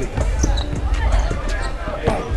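Basketball dribbled on an indoor hardwood court: a series of short bounces on the floor from the game footage.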